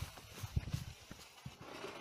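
Homemade paper-and-tape firecracker of flash powder fizzling instead of exploding: the charge burns with a steady hiss, a dud. Irregular soft thumps of footsteps run under it.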